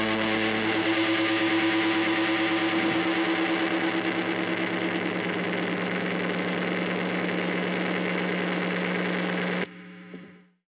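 A sustained, distorted electric guitar note ringing out through the amplifier at the end of a rock song, dropping to a single lower held note about three seconds in and cut off suddenly near the end.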